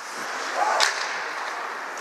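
Ice hockey play in an indoor rink: steady rink noise with one sharp, high-pitched swish about a second in, from skates or sticks on the ice.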